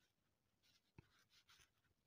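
Faint scratching of a pen writing on notebook paper, in short strokes, with one soft tap about a second in.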